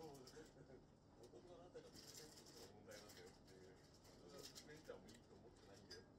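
Near silence: quiet room tone with a faint, wavering pitched sound throughout.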